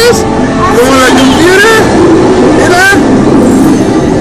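Attraction soundtrack over the ride's loudspeakers: voices gliding up and down in pitch, sung or vocalised without clear words, over a steady background noise.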